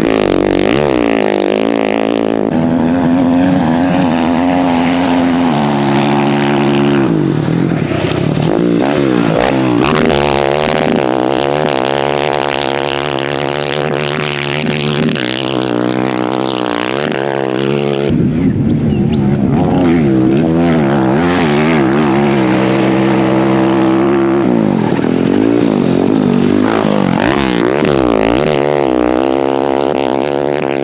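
KTM 500 EXC-F dirt bike's single-cylinder four-stroke engine running hard, its pitch repeatedly climbing, dropping and holding as the rider works the throttle along the track.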